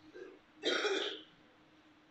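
A man clears his throat once into a handheld microphone, a short rasp a little over half a second long about midway through, over a faint steady hum.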